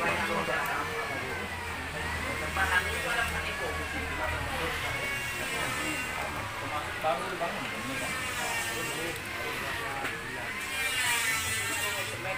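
Indistinct voices of people talking in the background, with a steady low hum underneath that is strongest in the first half.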